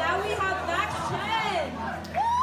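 Indistinct speech: voices talking and calling out in a large hall.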